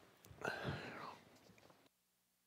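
Faint whispered or low spoken voice, off the microphone, loudest about half a second in; the sound cuts off abruptly to near silence just before the end.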